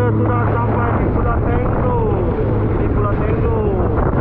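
Sea-Doo jet ski engine running steadily at speed, a constant low hum under the rush of wind and water spray.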